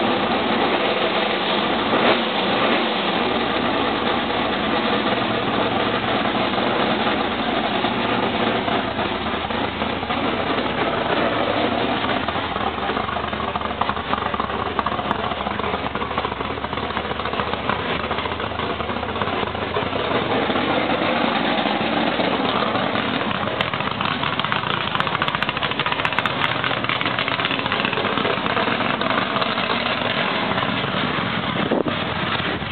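A car engine idling steadily for the whole stretch, with no revving.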